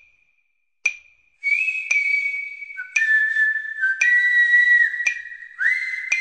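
Song intro: a whistled tune of held notes with short slides between them, over a steady ticking beat about once a second. The whistling comes in about a second and a half in.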